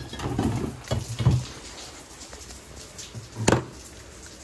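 Handling noises of a chainsaw and tools being moved on a workbench: a few dull thuds and rustles in the first second and a half, then one sharp knock about three and a half seconds in.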